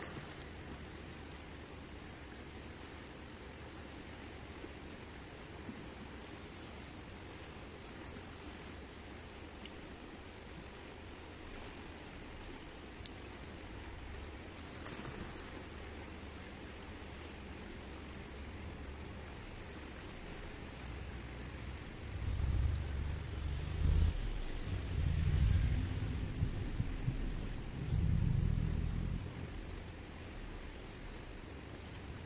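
Steady rushing of a fast river. In the last several seconds, loud irregular low rumbles of wind gusting on the microphone, and a single sharp click about halfway.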